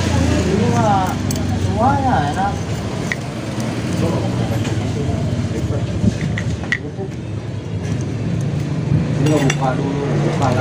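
Motorcycle clutch plates, steel and friction discs, clinking lightly against each other as they are handled and stacked onto the clutch hub: a few scattered metallic clicks over a steady low hum. A voice is heard briefly about a second in and again near the end.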